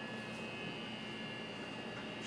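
Steady onboard ship machinery hum with a faint constant whine, heard from inside the vessel.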